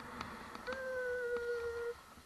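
A person humming one steady note for about a second, starting with a slight dip in pitch and cutting off abruptly. Underneath is a faint hiss of sliding on snow, with a few small clicks.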